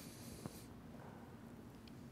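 Near silence: quiet room tone with a faint tap about half a second in.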